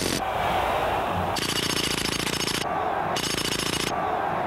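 Pneumatic jackhammer breaking up concrete, running in bursts of about a second with short changes in between.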